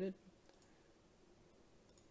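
Two faint computer mouse clicks, about half a second in and again near the end, against quiet room tone.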